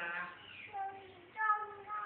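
Toddler singing into a handheld microphone, with a few short held notes.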